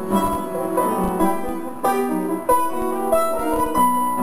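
Bandoneón and piano playing a tango together, a fast run of short, accented notes.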